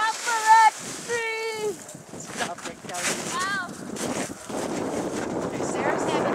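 Children's high-pitched shouts while sledding, two calls in the first two seconds and another around the middle, then a steady rush of wind on the microphone through the second half.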